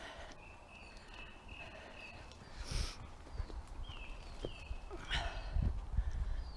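Birds singing in woodland: thin high notes repeated in the first half, then short falling chirps. A brief rustle about halfway, and soft thuds of footfalls on the earth path building toward the end as the dogs run up.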